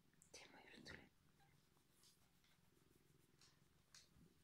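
Near silence in a quiet room, broken by one brief soft breathy sound about half a second in.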